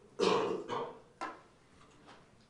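A brief laugh of three short bursts within about the first second, the first the loudest.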